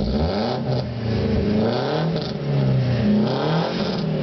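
Volkswagen Gol GTi's four-cylinder engine revved several times from idle, its pitch rising and falling with each blip, heard from inside the cabin.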